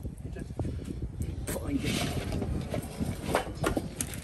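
Faint children's voices with a few small taps and clicks from handling paint pens and a metal tray, over a steady low rumble.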